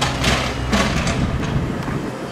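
Steady low hum of an engine running, with two short surges of rushing noise, one near the start and one about a second in.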